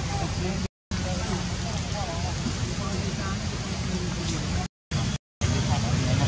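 Steady outdoor background noise, heaviest in the low end, with faint distant voices in it. The audio cuts out to silence briefly three times: once under a second in, and twice around the fifth second.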